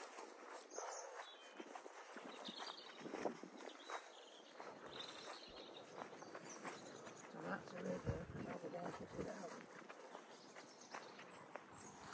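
Faint footsteps swishing through long wet grass, with a dog breathing close by.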